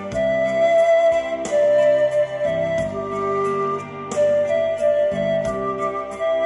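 Instrumental music played back through a pair of bare Wigo Bauer 25 cm ferrite-magnet speaker drivers driven by an EL84 push-pull valve amplifier. It has a melody of long held notes over keyboard chords and a light ticking beat.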